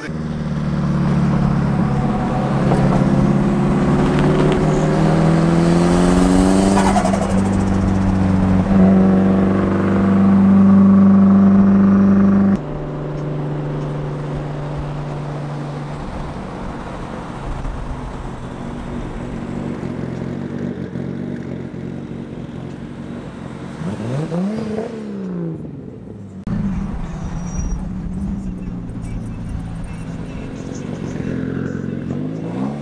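Car engines running on the road: a loud steady engine drone that cuts off suddenly about twelve seconds in, then a quieter engine drone with one quick rev up and back down near the end.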